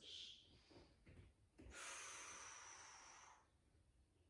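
A faint, long breath out lasting under two seconds, starting about halfway in, from a woman holding a forearm balance.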